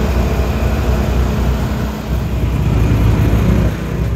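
Vehicle engines and road noise from traffic climbing a steep mountain road: a loud, steady low rumble that dips briefly about two seconds in.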